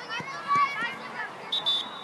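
Children's high-pitched shouts and calls during a football match, with a short, high whistle blast near the end.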